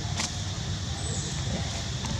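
A steady low rumble in the background, with one brief sharp click shortly after the start.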